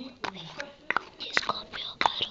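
Close-miked ASMR whispering and mouth sounds, with a scatter of sharp, wet clicks, more of them in the second half.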